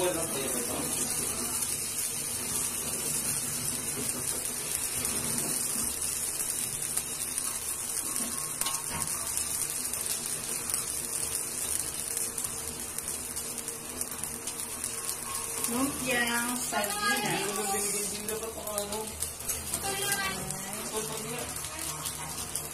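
Sardine spring rolls frying in shallow oil in an aluminium wok: a steady sizzle as more rolls are laid in. A voice speaks briefly near the end.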